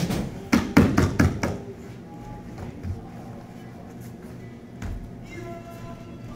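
Quick sharp smacks in the first second and a half, hand strikes landing on a padded chest protector worn by a partner pinned on a training mat, then a single thump near five seconds; background music runs underneath.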